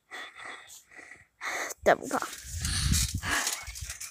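Short, quick breaths close to a phone microphone, then low rumbling wind and handling noise as the phone is swung about in fast movement.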